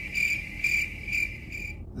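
Cricket chirping sound effect: a high, steady trill pulsing about twice a second that cuts off abruptly just before the end. It is the stock crickets gag for an awkward silence.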